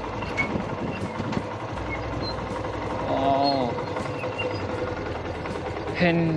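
Motorcycle running at low speed on a dirt track, heard from a camera on the rider, a steady engine and road noise. A brief voice sounds about halfway through.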